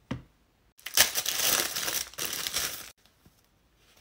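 Crinkling and crackling as a folded disposable face mask is handled and opened out, a dense burst about two seconds long starting about a second in. A short knock comes right at the start.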